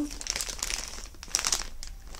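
Clear plastic bag crinkling as it is handled and turned, a run of irregular small crackles.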